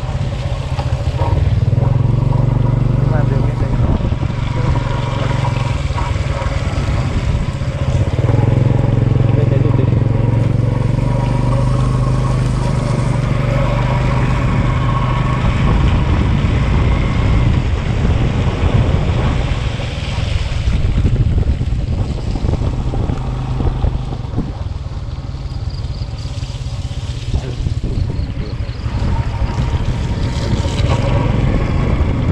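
Small motorbike engine running under way on a rough dirt road, a steady drone that grows louder about a third of the way in and eases off for a few seconds near the end.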